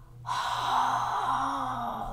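A woman's long, heavy sigh, one breathy breath lasting about a second and three-quarters, in exasperation.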